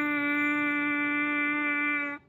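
French horn mouthpiece buzzed on its own, holding one steady note: the horn's written A, which sounds as concert D.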